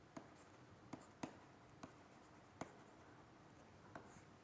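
Quiet strokes of a stylus writing on a tablet: a handful of sharp taps as the pen tip lands between letters, the loudest about a second and a quarter in, over near silence.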